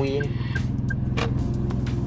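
Car engine running, heard from inside the cabin as a low steady hum, with one sharp click a little after a second in.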